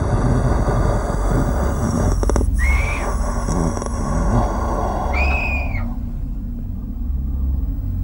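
Eerie Halloween outro music and sound effects: a steady deep rumbling drone under a hissing wash, with two short whistling tones that rise, hold and fall, about three and five seconds in.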